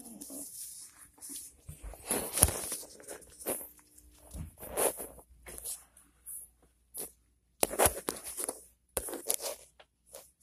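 Handling noise from a phone being moved about in the hand: irregular rubbing and rustling against the microphone, with scattered knocks, the loudest about two and a half seconds in.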